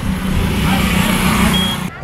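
Roadside traffic noise: a steady motor-vehicle rumble with a brief high beep about one and a half seconds in, cutting off abruptly at the end.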